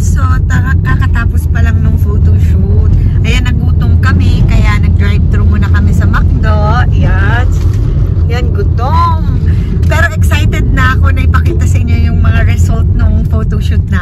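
Steady low rumble inside a moving car's cabin, with several people's voices talking and calling out excitedly over it.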